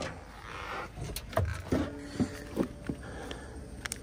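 A few light clicks and knocks, spread out, from parts and drawers being handled at a service van's drawer cabinet.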